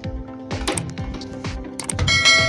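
Background music with a steady beat, with a couple of sharp clicks in the middle and near the end.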